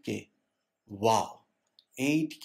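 A man's voice in narration: the tail of a word at the start, then a single short spoken syllable about a second in, with silent pauses around it.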